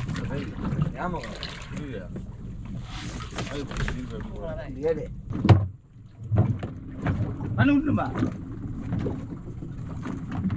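Men's voices talking on an open fishing boat at sea over a steady low rumble, with one sharp loud thump about halfway through.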